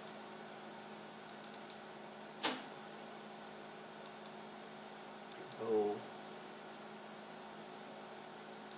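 Scattered computer mouse clicks and keyboard keystrokes: a quick run of light clicks, one louder click about two and a half seconds in, then a few more clicks, over a faint steady hum.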